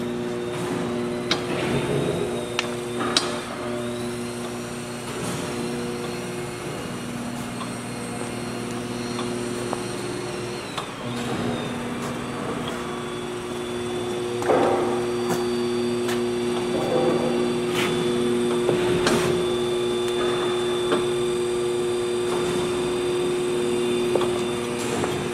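Electric drive motor and gearbox of variable-speed power tank turning rolls running: a steady hum with a thin high whine, with a few sharp clicks. About ten to eleven seconds in the hum breaks off briefly and comes back at a different pitch as the speed is changed, and from about fourteen seconds in it runs louder at rapid traverse.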